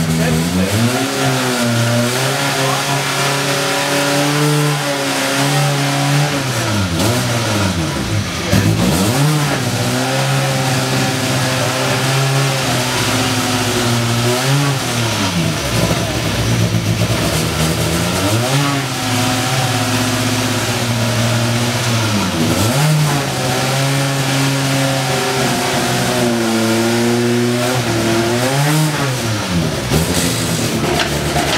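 Škoda Fabia S2000 rally car's 2.0-litre four-cylinder engine revving: it holds at a steady high pitch, then drops away and climbs back up again, several times over.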